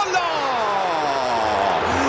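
A football commentator's long drawn-out "goal" shout, one held call falling steadily in pitch, over the noise of a stadium crowd.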